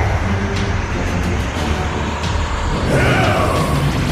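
Animated sound effects for a giant energy sphere: a heavy, continuous low rumble, with a descending whoosh about three seconds in. Background music runs faintly underneath.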